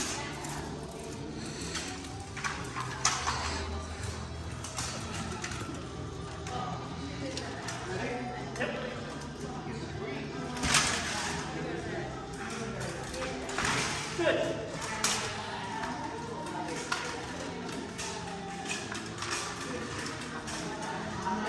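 Occasional clanks and knocks of steel swords striking shields and armour in armoured sparring. The sharpest strikes come about three, eleven and fifteen seconds in.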